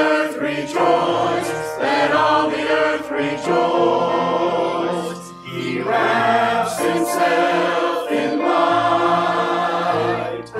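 Mixed church choir of men's and women's voices singing a hymn.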